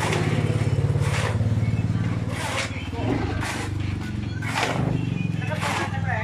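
A hoe scraping through wet concrete mix on the ground, with short strokes about once a second, over a small engine running steadily.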